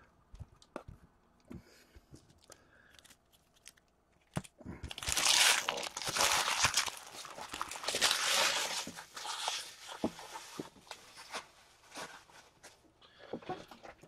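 Light clicks of trading cards being handled and set down, then, from about four seconds in, several seconds of loud crinkling and tearing of card-pack packaging.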